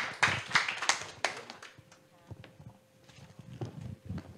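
Brief scattered applause from a small audience: a run of claps that thins out and fades within about a second and a half, leaving only a few faint taps.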